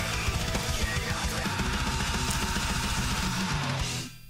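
Melodic death metal drum cover: an acoustic drum kit with triggered double-bass kicks, played fast and evenly over the recorded song's guitars. The music cuts off suddenly at the very end as the song finishes.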